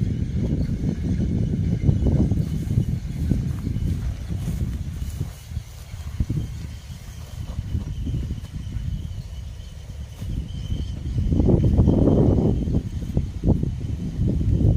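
Wind buffeting the microphone in uneven low rumbling gusts, strongest near the end, with a faint steady high tone behind it.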